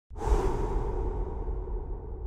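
Swooshing title-animation sound effect: a sudden airy whoosh that fades over about a second, over a steady low rumble.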